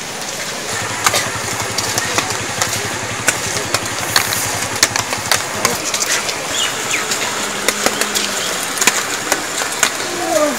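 A small engine running at a low, even idle, fading out about five seconds in, over a steady hiss with scattered sharp clicks.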